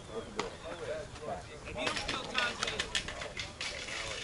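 Indistinct voices of softball players and onlookers talking and calling out, with a couple of short sharp clicks.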